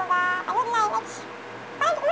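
A woman's high-pitched, wordless vocalizing: a held note, then short wavering, sliding phrases with a brief pause in between.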